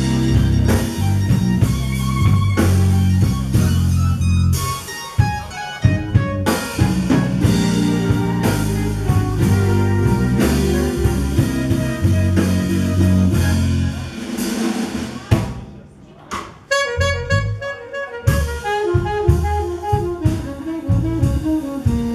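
Live instrumental blues from a jazz band with electric bass, drums and keyboards, with heavy bass lines for most of the stretch. The band drops away briefly about three-quarters of the way in, then higher melodic lines come in, with the saxophone playing by the end.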